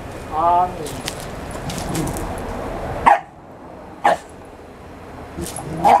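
Two bully-breed puppies play-fighting on gravel: short, sharp yips about three seconds in, again a second later and near the end, over scuffling paws on the stones.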